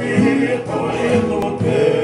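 Men singing together in harmony over strummed acoustic guitar: a Tongan faikava (kava-circle) song.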